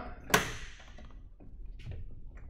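Enstrom 280FX helicopter cabin door being opened: the latch releases with one sharp click and a short ring, and a fainter tap follows near the end.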